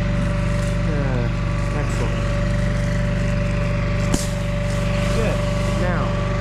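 Tractor diesel engine idling steadily, with one sharp click about four seconds in.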